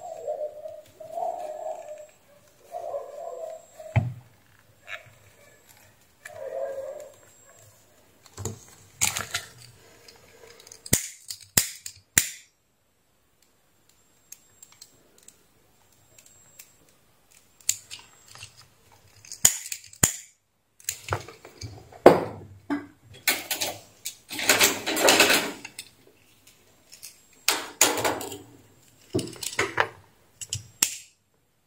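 Handling noise as the repaired headset cable and heat-shrink tubing are worked by hand on a workbench: scattered sharp clicks and taps, with rustling bursts that grow busier in the second half.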